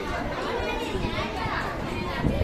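Many children's voices talking and calling out at once, a busy overlapping chatter in a room.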